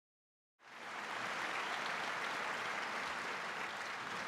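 Audience applause in a large hall, fading in about half a second in and then holding steady.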